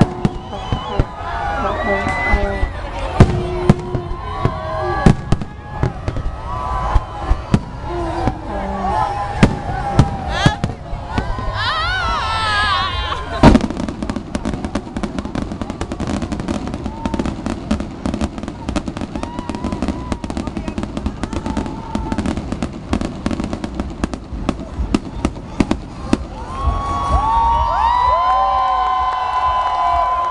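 Fireworks display: repeated sharp bangs of aerial shells, one very loud bang about a third of the way in, then a long run of dense, rapid crackling. A crowd talks and whoops over the early bangs and cheers near the end.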